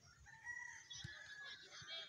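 A rooster crowing faintly: one long held call lasting about a second and a half.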